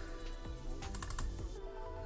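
A quick cluster of computer mouse clicks about a second in, over quiet background music.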